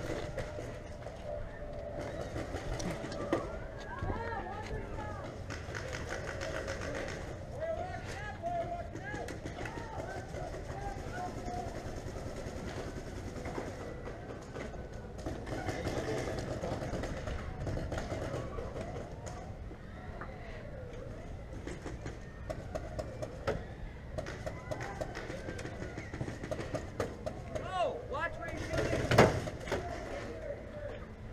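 Distant shouting voices with scattered sharp pops of paintball markers firing; the pops come in a quicker, louder run near the end.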